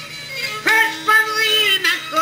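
Albanian folk song: a solo voice sings a melody of long held notes with vibrato, coming in strongly about two thirds of a second in.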